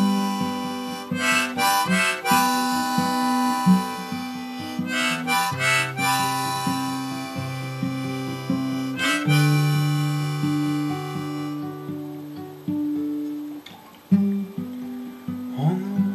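Harmonica and acoustic guitar playing a folk song's instrumental intro, the harmonica holding long notes over the guitar. The harmonica drops out about two-thirds of the way through, leaving the guitar alone. The guitar pauses briefly near the end, then carries on.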